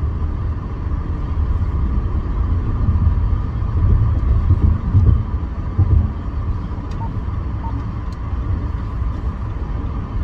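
Road and engine noise inside the cabin of a moving car in traffic: a steady low rumble with a faint hiss above it.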